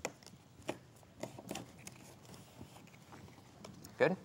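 Faint, scattered light clicks and rustles of card paper as postcards are folded in half and creased by hand on a table.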